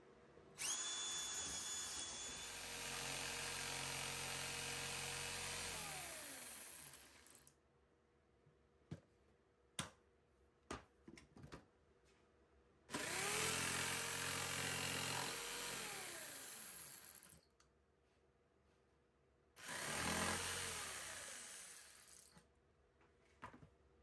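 A DeWalt cordless drill boring a starter hole through thin plywood, then a corded Skil jigsaw cutting out the marked opening in two short runs. Each run spins up, cuts steadily and winds down, with a few clicks of handling between.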